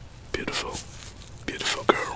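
A man whispering close to the microphone in two short bursts, breathy and without clear words.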